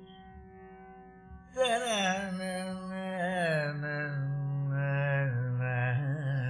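Carnatic vocal music in raga Simhendramadhyamam: a faint steady drone, then about one and a half seconds in a male voice comes in loudly, singing sliding, ornamented phrases that sink into his lower range over the drone.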